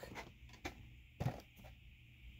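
A few faint taps and rustles of hands shifting their grip on a cardboard box.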